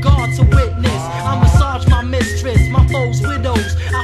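Underground 1990s-style hip hop track: rapping over a drum beat with a steady bass line.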